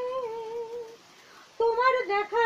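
A woman singing solo with no accompaniment: a long held note with a slight waver that breaks off about halfway through, a brief pause for breath, then short notes as she picks the song up again.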